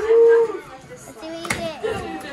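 Voices of a small gathering: a drawn-out exclaimed vocal sound at the start, then scattered talk, with one sharp snap about one and a half seconds in.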